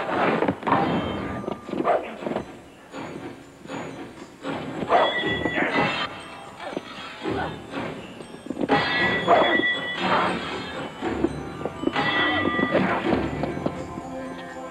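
Irregular thuds and scuffling of two men struggling in a fight, with music underneath.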